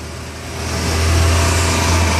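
Engine running with a steady low hum that grows louder about a second in.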